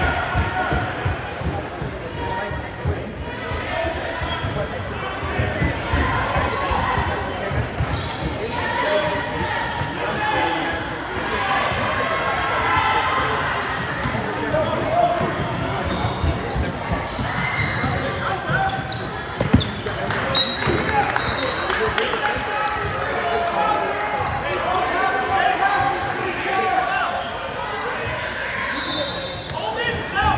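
Basketballs bouncing on a hardwood court during a game, in a large reverberant gym, over the continuous talk and calls of players and spectators.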